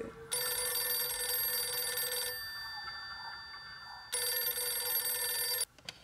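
Telephone ringing: two long rings about two seconds each, the first fading out after it stops and the second cutting off suddenly.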